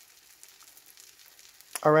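Faint sizzle of an omelette cooking in a frying pan, with a man's voice starting near the end.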